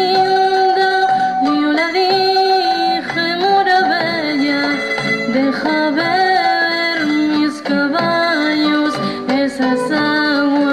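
A woman singing a song in Spanish in long held notes, accompanied by her acoustic guitar.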